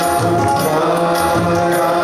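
Kannada bhajan sung live by a male voice, with harmonium drone, tabla and flute accompaniment, and small hand cymbals (taala) striking a steady beat.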